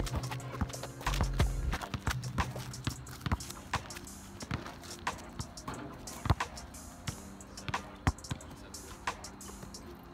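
Background music with sustained low notes, over the irregular thumps of a basketball being dribbled on an asphalt court. The loudest thump comes a little after the middle.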